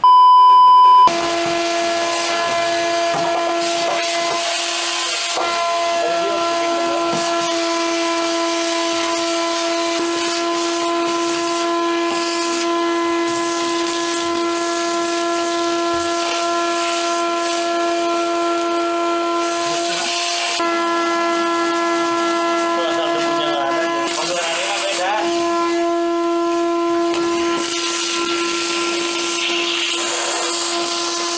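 A one-second test-tone beep, then a vacuum cleaner running steadily with a high whine over a hiss as its hose nozzle sucks dirt and grit off a bare car floor pan.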